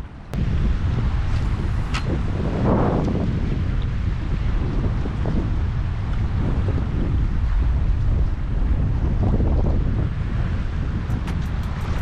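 Wind buffeting an action-camera microphone over open water, a steady low rumble that doesn't let up. A quick run of faint ticks comes in near the end.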